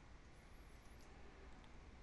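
Near silence: room tone with a faint steady hiss, and a faint high-pitched wavering whine in the first half.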